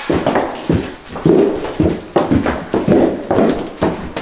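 A dog close by making a run of short, uneven, repeated sounds, about three a second.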